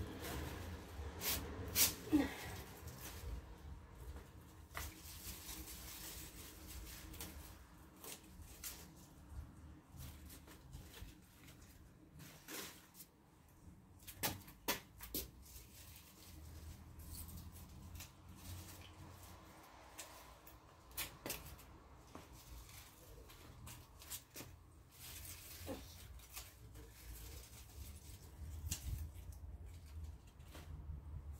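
Scissors snipping Swiss chard stalks every few seconds, with the leaves rustling as they are handled, over a low steady rumble.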